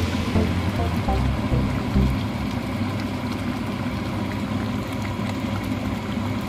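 Pork lechon paksiw simmering in its vinegar and soy braising liquid in a steel pot: a steady bubbling hiss with many small pops. Background music with a bass beat ends about two seconds in.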